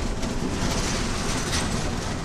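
A car's engine and road noise heard inside the moving car's cabin, a steady rumbling hiss.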